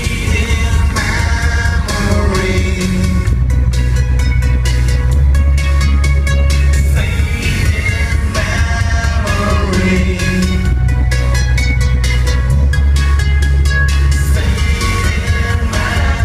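Live synth-pop band playing loud, bass-heavy electronic music with a steady beat while a male singer sings the lead vocal, recorded through a phone's microphone in the crowd.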